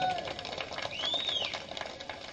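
A pause in amplified speech: the last word echoes away, then faint rapid ticking fills the background, with one short chirp that rises and falls about halfway through.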